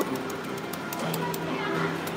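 Arcade background: game-machine music playing at a moderate level, with a few faint clicks.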